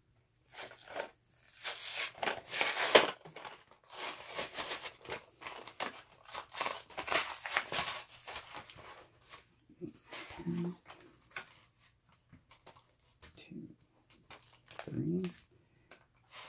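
Plastic blister packaging and its cardboard backing being torn and pulled apart by hand, crackling and crinkling in irregular bursts that are loudest in the first half. Later the crinkles are fewer and quieter, with a brief low vocal sound around ten seconds and again near fifteen.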